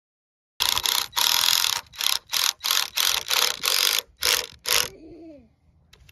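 Ryobi cordless driver driving screws into the boards of a wooden frame, in a run of about ten short, loud bursts that get shorter towards the end.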